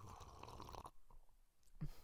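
Faint mouth noise close to the microphone for about the first second, then near quiet.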